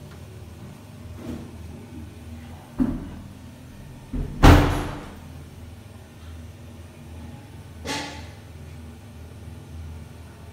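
A toilet cubicle door being shut: a sharp knock about three seconds in, a loud bang a second and a half later, and a lighter knock near the end.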